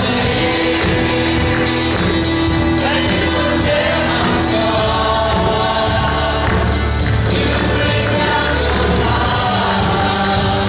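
Live gospel worship music: a group of women singing together into microphones over keyboard accompaniment, with long held notes.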